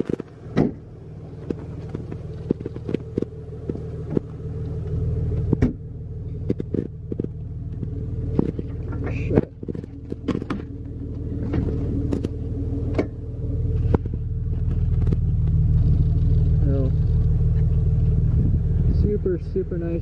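Jeep Wrangler TJ's 4.0-litre inline-six idling steadily, growing louder over the second half, with scattered clicks and knocks over it.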